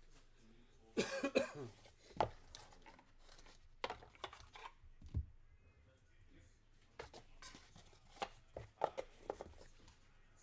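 Cardboard trading-card boxes and packs being handled on a table: a series of short knocks and rustles. A cough about a second in.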